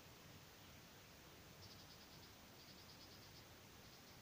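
Near silence: faint room tone, with two short trains of rapid, high-pitched chirps about a second and a half and two and a half seconds in, from a small animal such as an insect.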